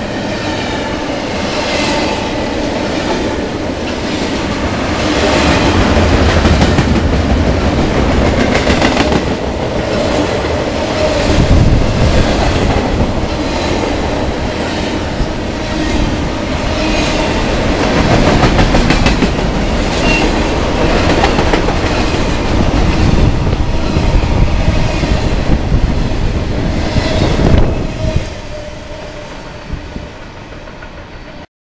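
Double-stack intermodal freight train passing close at speed: a loud steady rumble of steel wheels with repeated clickety-clack over the rail joints. The noise dies away near the end as the last cars go by.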